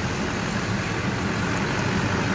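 Duramax LLY 6.6-litre V8 turbo-diesel idling steadily with the hood open, running smoothly at the moment despite its intermittent injector-connector fault.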